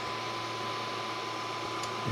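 Steady fan hum with a thin, constant high-pitched tone, typical of the cooling fan on a powered laser engraver head, and a faint tick near the end.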